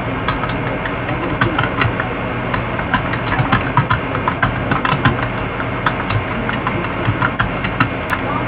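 A steady low mechanical hum with frequent irregular clicks and crackles over it.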